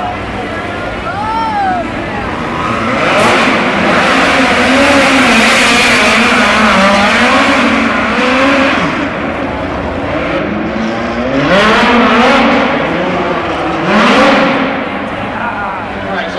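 Midget race cars' four-cylinder engines revving, the pitch rising and falling as the cars are push-started and run on the dirt track. The sound swells loud several times as cars go by, through the middle and again near the end.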